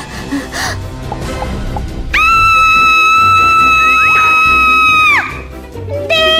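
Background music with a steady beat, and about two seconds in, a young girl's long, high scream of fright, held at one pitch for about three seconds before it falls off.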